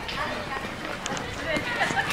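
Several children's voices chattering and calling out over one another, with no clear words.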